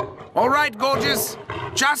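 A cartoon monster's voice making a few short growls in quick succession, then a man's voice begins to speak near the end.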